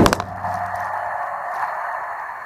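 A sharp knock as a rubbery toy figure bumps against the camera, followed by a steady buzzing hum with one held tone.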